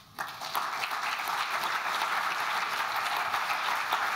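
Large audience applauding. The clapping starts a moment in and holds steady.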